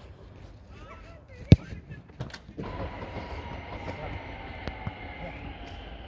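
A single sharp thud of a football being struck about a second and a half in, then a couple of lighter knocks. From just before the halfway point a passing train sets in: steady running noise with a thin, high, drawn-out whine.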